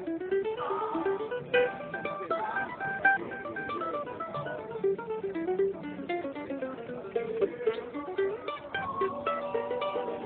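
Hughes Lloyd Loar copy mandolin, with a solid Engelmann spruce top and sugar maple back and sides, played solo in a bluegrass style: quick runs of single picked notes climbing and falling.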